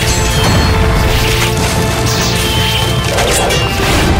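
Dramatic soundtrack music with fight sound effects laid over it: about four whooshing strikes and crashing hits spread over a few seconds.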